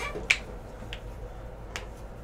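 One sharp snap or click about a third of a second in, followed by two fainter clicks, near 1 second and 1.75 seconds.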